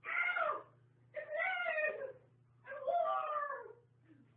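Three drawn-out, high-pitched, meow-like cries, each up to about a second long, each sliding down in pitch at its end.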